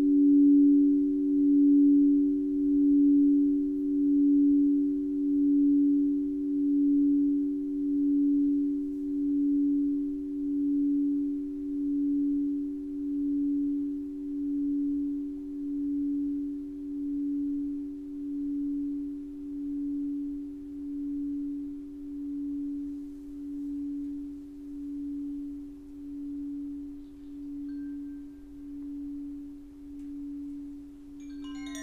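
Crystal singing bowls ringing out: a low steady hum with a second tone just above it, wavering in a slow pulse about once every second and a half and slowly fading.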